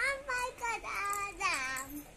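A child singing in a high voice, holding notes and ending on a long downward slide.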